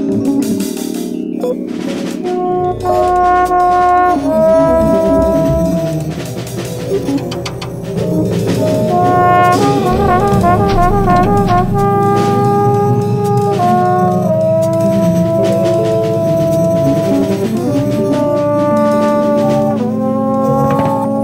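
Free jazz improvisation: a brass instrument plays long held notes that step between pitches, with a quick wavering figure about ten seconds in, over scattered percussion and a sustained low accompaniment.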